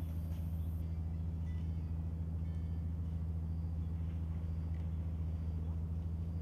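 Steady low hum of an idling engine, one even pitch with no revving.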